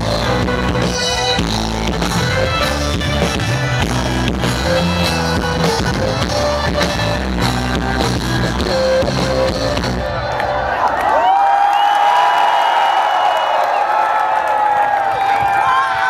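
Live rock band playing at full volume, with electric guitar, bass and drum kit. About eleven seconds in the bass and drums stop and a sustained high-pitched ringing tone holds on to the end.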